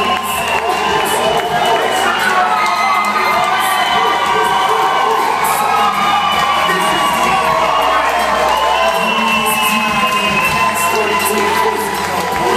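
A large audience cheering and screaming loudly, many high voices overlapping and held.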